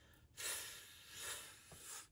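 A woman sounding a long, breathy "ffff", the first sound of the word "fish", swelling twice.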